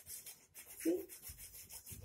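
Yellow chalk rubbing on a blackboard in quick, repeated strokes, shading in a drawing, several scratchy strokes a second.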